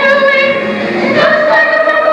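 A chorus of high school voices singing on stage, holding long notes that move to new notes about a second in.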